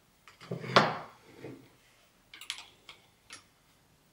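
Light knocks and taps of a thermometer probe and stirring spoon being handled in a plastic measuring jug and on the tabletop. The loudest knock comes about three-quarters of a second in, followed by a few fainter taps.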